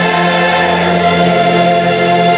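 Choir singing a Congregação Cristã no Brasil hymn in long held notes, with orchestral accompaniment.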